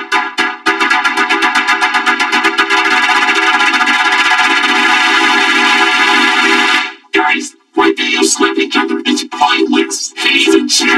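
Cartoon slapping sounds from a rapid slap fight, run through a heavy audio effect that turns each slap into a buzzy, pitched, synthesizer-like tone. The slaps speed up until they merge into one continuous buzz, break off about seven seconds in, then return as uneven single hits.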